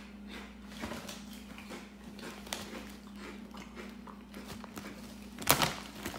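Chewing kettle-cooked potato chips: soft, irregular crunching. The chip bag crinkles loudly about five and a half seconds in.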